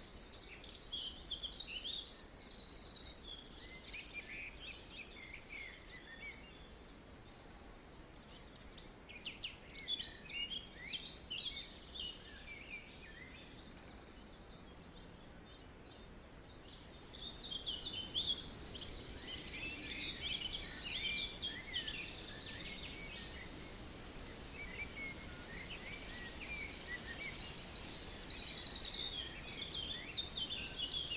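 Birds chirping and singing, with many short high calls and fast trills overlapping. They come in spells with quieter stretches between, over a faint steady hiss.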